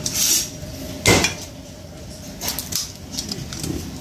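A kitchen cleaver and garlic cloves handled on a wooden chopping block, in preparation for crushing the garlic: a brief papery rustle at the start, one sharp knock of the knife on the wood about a second in, and a few light clicks later.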